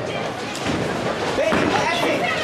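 Bowling ball released onto the wooden lane with a thud and rolling away, under the chatter and voices of a bowling alley.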